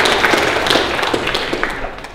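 Audience applauding, a dense patter of claps that thins out and dies away near the end.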